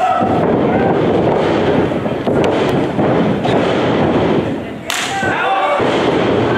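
Thuds from a wrestling ring's canvas under the wrestlers, with one loud slam near the end, over shouting voices in a hall.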